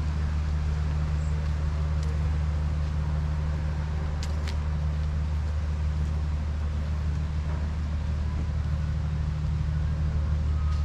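A vehicle engine idling with a steady low hum, and a couple of brief clicks about halfway through.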